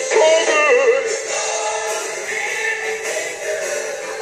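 Live gospel church music: a voice sings a short wavering, melismatic phrase during the first second, over sustained chords from the accompaniment that carry on steadily afterwards.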